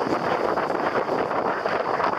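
Steady rush of wind on the microphone mixed with waves breaking on the shore.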